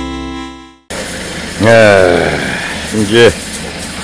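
A short intro jingle with sustained tones fades out in the first second, and after a brief silence a man's voice speaks over a steady background machine hum.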